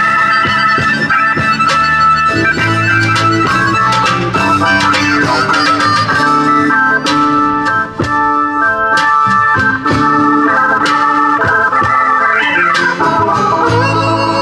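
Blues band playing an instrumental passage led by a Hammond-style organ voice from a Nord Electro 2 stage keyboard: held organ chords and runs over a steady beat with drum and cymbal hits.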